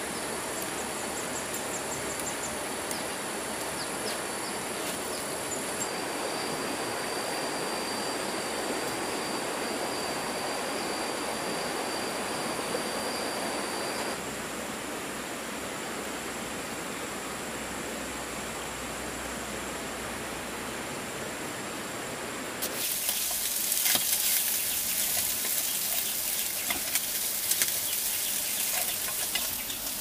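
Steady rush of a forest stream, with insects calling over it in high steady tones; one high trill stops about 14 seconds in. About 23 seconds in the sound cuts sharply to a louder crackling sizzle of food frying.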